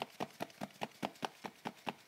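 A sealed Sylvanian Families blind bag shaken quickly back and forth by hand, the baby figure and its accessory knocking inside with a dull thudding sound, about six or seven knocks a second.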